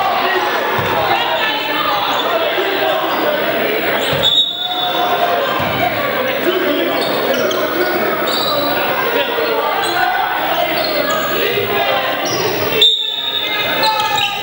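Basketball being dribbled on a hardwood gym floor under overlapping, echoing voices of players and onlookers in a large hall. Two short, shrill high tones cut through, about four seconds in and near the end, the second the loudest.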